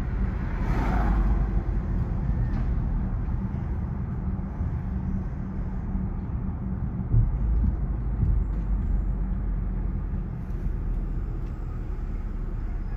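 A car being driven slowly, heard from inside the cabin: a steady low engine and road rumble.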